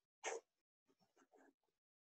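Near silence, with one brief faint noise about a quarter of a second in.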